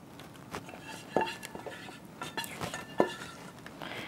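Sauce being scraped out of a saucepan into a glass baking dish with a silicone spatula: soft scraping with light knocks and clinks against the pan and dish, the sharpest about a second in and again near three seconds.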